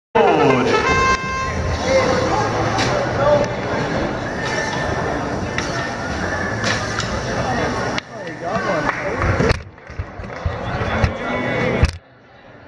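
Busy competition hall: many voices talking at once with music playing under them, and a short steady electronic tone about a second in. The din drops and turns patchy after about eight seconds.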